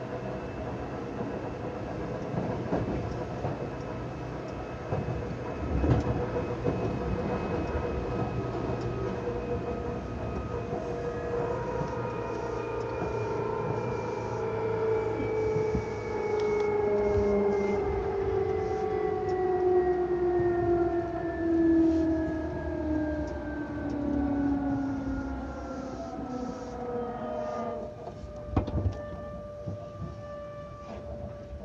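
Seibu 2000 series electric train (set 2085F) running, its motor and gear whine falling slowly in pitch as the train slows, over a steady rumble of wheels on rail. Near the end the whine drops away suddenly, with a few knocks, leaving one steady tone.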